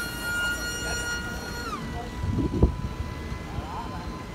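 Electric motor and propeller of a small radio-controlled flat jet whining overhead at a steady high pitch. The pitch drops lower about two seconds in as the motor slows, and a sharp thump follows shortly after.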